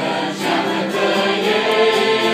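Mixed choir of women's and men's voices singing a Romanian hymn in held chords that move to a new chord about half a second in.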